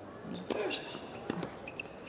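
Tennis ball being struck by rackets and bouncing on the hard court during a doubles rally: a few sharp pops over the first second and a half, under a short exclamation of "oh".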